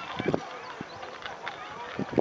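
Indistinct voices with irregular short knocks, the loudest about a quarter of a second in.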